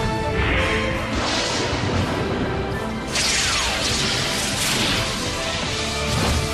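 Cartoon soundtrack music with sound effects. About three seconds in, a loud rushing whoosh cuts in, with a falling tone, and carries on under the music.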